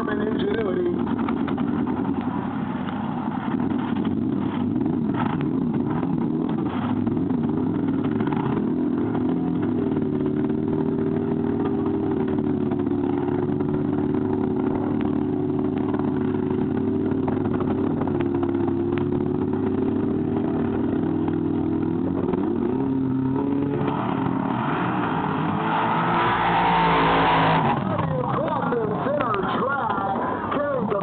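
Racetrack sound during a horse race: a continuous wavering, pitched drone, then a loud swell of crowd noise from about 24 seconds in that cuts off suddenly near 28 seconds.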